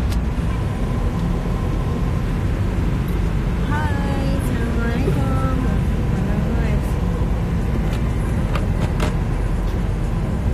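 Steady low rumble of car engine and road noise heard from inside the cabin.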